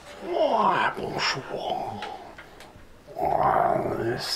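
A person's voice making wordless, drawn-out vocal sounds in two stretches: the first starts about a quarter second in, the second about three seconds in.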